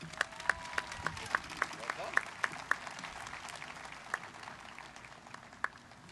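Thin applause from a sparse outdoor crowd. One nearby clapper stands out, clapping steadily about three to four times a second, and the clapping thins out to a few scattered claps after about three seconds.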